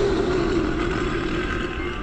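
A rumbling whoosh sound effect that swells in sharply and then slowly fades, laid over soft ambient music.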